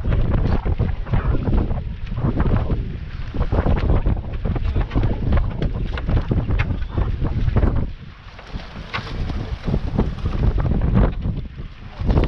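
Wind buffeting the microphone in uneven gusts that ease off about eight seconds in, with scattered light knocks.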